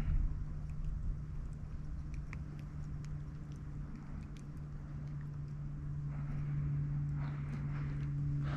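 Small clicks, knocks and rustles of handling in a small jon boat, over a steady low hum, with a patch of louder rustling near the end.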